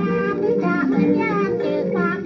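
A Thai ramwong song playing from a 78 rpm shellac record on a turntable: a voice singing a melody over instrumental accompaniment.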